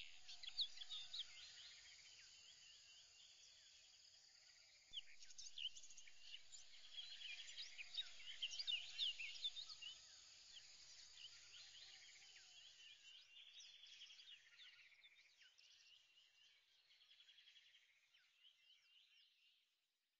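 Faint birdsong: many short chirps and trills, louder in the middle and fading out near the end.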